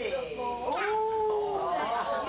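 A single drawn-out vocal call lasting about a second, its pitch rising and then slowly falling.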